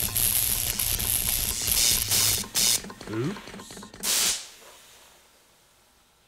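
Cartoon electrocution sound effect: electrical crackling and hissing over a low buzz, with a short rising cry about three seconds in. It ends in a last hissing burst just after four seconds, then dies away.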